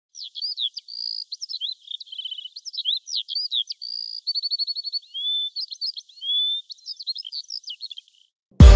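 Bird song: a continuous, varied run of quick chirps and slurred whistles, with two rapid trills about two and four seconds in. It sounds thin, with nothing in the low range.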